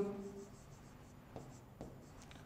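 Faint scratching of a stylus writing on a drawing tablet, with two light taps of the pen about a second and a half in.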